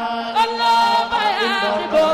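Zikr, a Sufi devotional chant, sung in long held notes with a wavering pitch.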